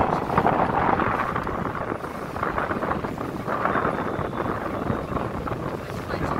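Wind buffeting the microphone over the steady running noise of a tour boat under way: its engine and the water rushing past the hull.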